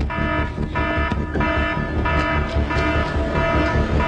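Dramatic cartoon soundtrack music with a steady pulsing beat and heavy bass under sustained electronic tones, with an alarm-like buzzing tone that signals a combat alert.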